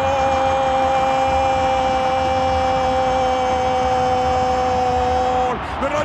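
Football commentator's long goal cry, a single drawn-out 'Goool' held on one steady pitch, over steady stadium crowd noise. The cry falls away about five and a half seconds in.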